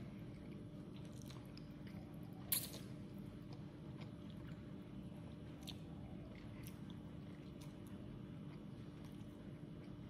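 A child slurping noodles off chopsticks and chewing them, in short wet sucks at intervals, the loudest and sharpest about two and a half seconds in.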